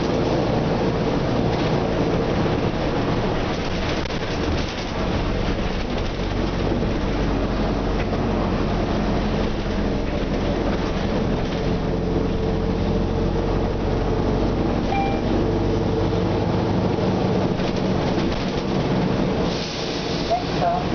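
Nova Bus RTS city bus heard from inside the passenger cabin: its diesel engine and drivetrain running with a steady, deep hum, with cabin noise over it.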